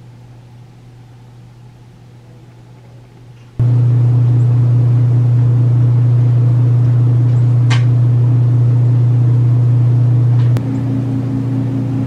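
Hot tub pump running: a loud, steady low hum with a rushing hiss that starts abruptly a few seconds in. Near the end its tone shifts and a higher hum joins in.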